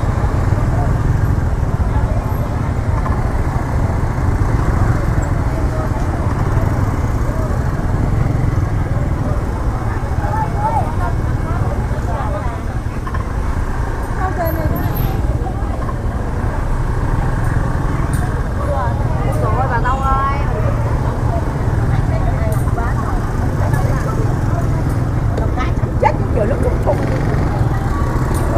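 Scooter and motorbike engines running in slow, packed street traffic, a steady low rumble, with people's voices talking over it.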